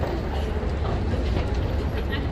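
Busy city sidewalk ambience: a steady low rumble with faint chatter of passers-by mixed in.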